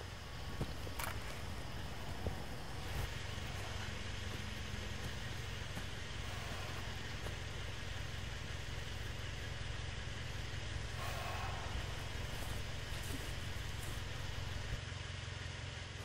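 A pickup truck's engine idling, a steady low sound that runs on unchanged.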